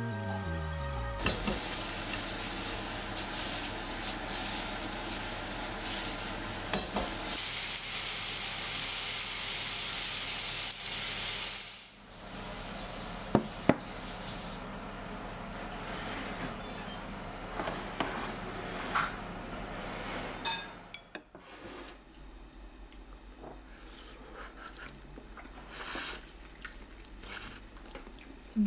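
Chicken pieces sizzling in a thick sauce in a frying pan, an even hiss that lasts about ten seconds and stops. Then a ceramic bowl is set down on a table with two sharp knocks, followed by a few light clinks of dishes and a spoon.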